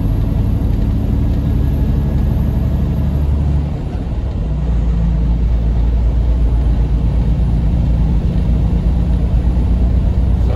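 Semi-truck diesel engine and road noise heard inside the cab while cruising on the highway: a steady low drone. About four seconds in, the engine note and level dip briefly and then settle at a new steady pitch.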